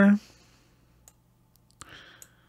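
A spoken word trails off at the start, then faint computer mouse clicks: one about a second in and a sharper one near the end.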